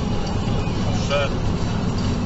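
Steady road and engine noise of a car at motorway speed, heard inside the cabin, with a short wavering tone just over a second in.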